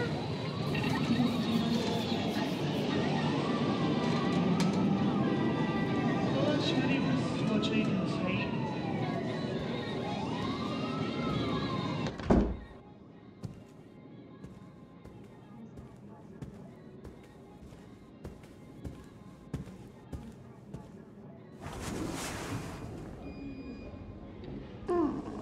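A siren wailing, rising and falling every two to three seconds over a dense low rumble, cut off about halfway through by a single loud thump. After that it is much quieter, with faint scattered clicks and a brief rush of noise near the end.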